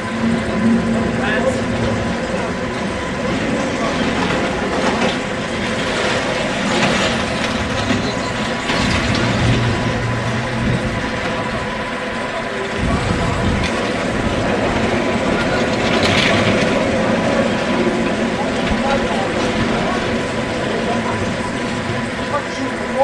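Steel roller coaster train running along its track, a steady rolling rumble with rattles, over background voices.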